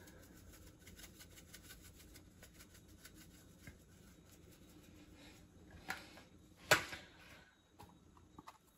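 A black pepper shaker shaken over raw ribeye steaks, giving a faint, quick rattle of small ticks. Two sharper knocks come near the end, the second the loudest.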